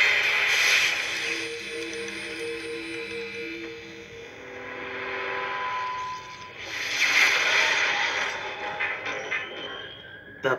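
Film trailer soundtrack: music with a repeated, pulsing held note early on, then a loud swell of noise about seven seconds in.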